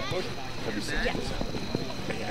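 Spectators' voices along a soccer sideline: scattered talk and a short high-pitched call a little before the middle, with several short thuds in the second half.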